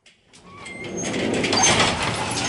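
The previous song cuts off into a moment of near silence. A noisy sound effect then fades in and swells over about a second and a half, with a few faint high tones, as the intro of the next rap track begins.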